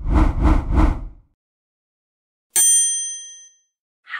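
Intro sound effects: three quick, evenly spaced low pulses in the first second, then a single bright, bell-like ding about two and a half seconds in that rings out for about a second.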